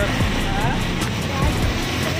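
Steady street traffic noise, with auto-rickshaw and motorbike engines close by.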